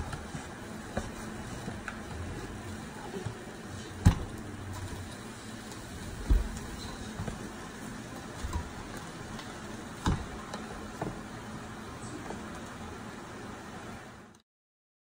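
Kitchen handling sounds at a frying pan: a few sharp knocks and clatters, the loudest about four seconds in, over a steady low hiss, as turkey meat is broken up and put into the pan.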